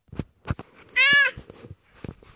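A baby gives one short, high-pitched squeal about a second in, among the clicks and rubs of the phone being handled right at the microphone.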